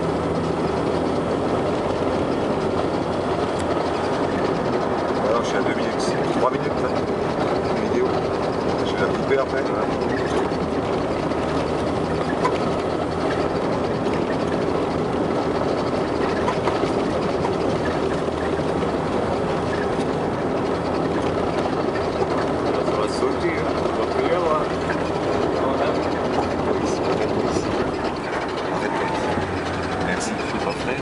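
Car engine droning steadily with tyre and road noise, heard from inside the cabin as the car climbs a steep road.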